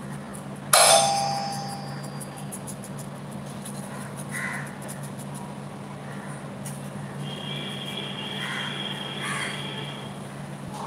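A single sharp clang about a second in, ringing with several tones and fading over about a second, over a steady low hum.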